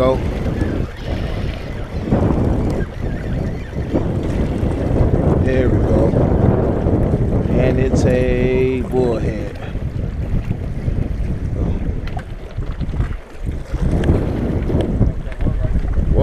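Strong wind buffeting the microphone: a dense, gusty low rumble throughout. A short pitched sound breaks through about halfway in.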